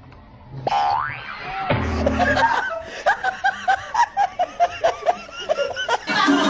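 A short rising cartoon-style boing sound effect about a second in, then a low sound, followed by a run of laughter in quick rhythmic bursts for the last few seconds.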